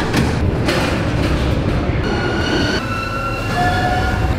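Paris Métro train moving alongside the platform: a dense rumble of wheels on rails, joined about halfway through by a high electric whine that steps down in pitch.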